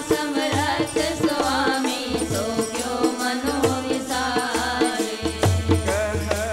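Sikh kirtan: a hymn sung to harmonium with tabla keeping a steady rhythm.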